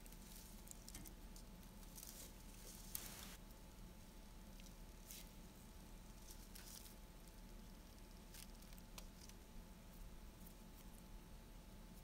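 Faint, scattered light pattering and rustling of damp porcupine quills as handfuls are dropped into a pot of dye liquid and settle.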